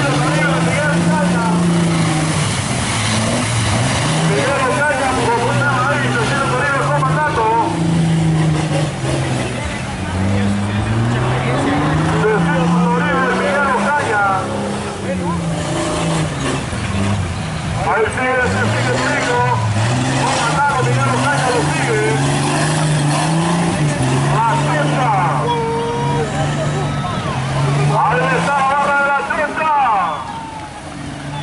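Off-road 4x4 engines revving hard in deep mud, the pitch climbing and dropping again and again as the drivers work the throttle to push through the mud pit.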